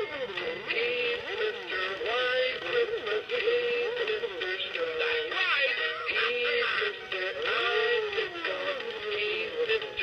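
2003 Gemmy Mr. Snow Business animated snowman playing its Christmas song through its built-in speaker: a melody that slides and wavers up and down over the backing music.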